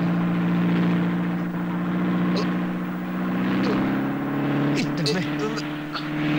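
Car engine running steadily under way, a low droning hum whose pitch creeps up slightly in the second half.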